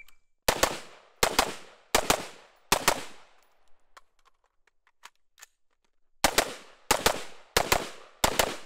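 Rifle fire from a short AR-style rifle: four quick pairs of shots, then a pause of about three seconds with faint clicks as the magazine is changed, then three more pairs of shots.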